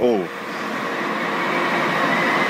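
Steady mechanical running noise from sludge-loading machinery and a bulk lorry at a wastewater treatment plant. It slowly grows louder, and a faint high whine comes in about halfway.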